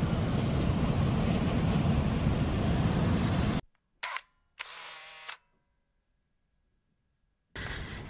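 Steady hiss of rain and wet pavement heard from inside a car, cut off abruptly a little over three seconds in. Then near silence, broken by a brief click and a short whirring tone of steady pitch.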